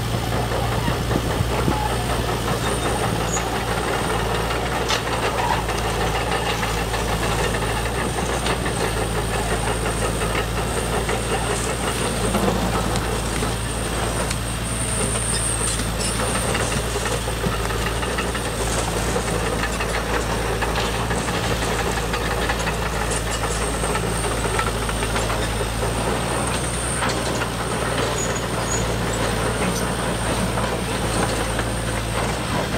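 Large RC Caterpillar hydraulic excavator running, a steady low drone of its motor and hydraulic pump with a thin high whine above it, and scattered short clicks of stones as the arm works.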